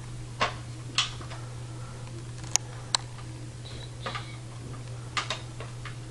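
Scattered light clicks and taps of small plastic toys being handled: a toy hairbrush and a Littlest Pet Shop figure knocking against a plastic playset, a few seconds apart. A steady low hum runs underneath.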